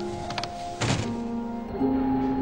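Background music of held tones, with a light knock and then a heavier dull thump about a second in: a locked motel-room door being pushed and rattled.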